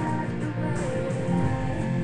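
Guitar playing held, strummed chords in an instrumental passage with no singing.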